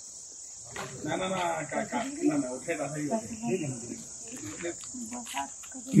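Steady high-pitched drone of insects, with faint voices of people talking in the background for most of it.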